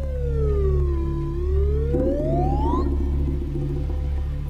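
Film background score: a sliding electronic tone swoops down in pitch, then climbs slowly higher for about three seconds, over a steady, pulsing low bass pattern.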